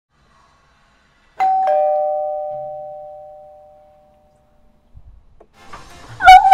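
Doorbell chime ringing a two-note ding-dong, a higher note then a lower one, the tones fading away over about two and a half seconds. A few faint clicks follow near the end.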